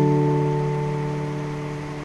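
Acoustic guitar's final strummed chord ringing out, fading steadily away with no new strum.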